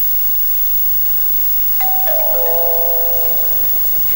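Doorbell chime: four tones come in one after another in quick succession about two seconds in and ring on together, over a steady hiss.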